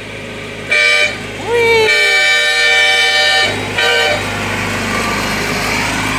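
Train horn mounted on a Craftsman riding mower sounding three blasts: a short one about a second in, a long one of about a second and a half, and a short one near four seconds. The mower's small engine runs steadily underneath and grows louder as it approaches.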